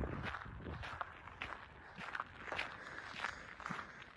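Footsteps of a person walking at a steady pace, faint, about two to three steps a second.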